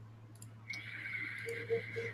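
A draw on a vape mod: a faint steady hiss of air pulled through the atomizer, with a thin whistle in it, starting under a second in.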